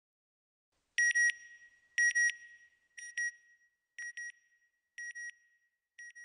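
Electronic double beeps, one high-pitched pair each second, the first two pairs loudest and the later ones quieter, each with a short echo trailing. This is the closing sound ident on the NASA Goddard end card.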